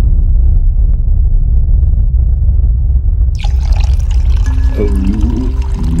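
Theme music: a loud, deep sustained bass, joined about three seconds in by brighter, fuller instrumentation, with a voice singing "Oh" near the end.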